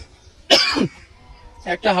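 A man coughs once to clear his throat, a short sharp burst about half a second in.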